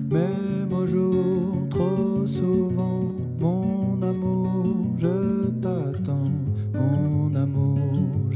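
Acoustic guitar strummed in a slow pop song, with a man singing the melody over it.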